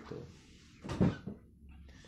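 A single short knock and rustle about a second in, over faint hiss: a clip-on microphone being handled against clothing.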